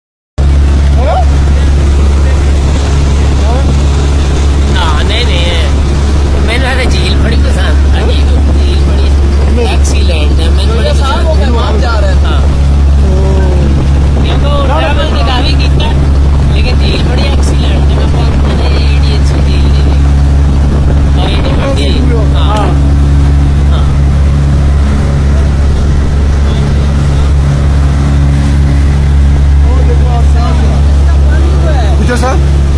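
A motorboat's engine runs with a loud, steady low drone, while passengers' voices rise and fall over it.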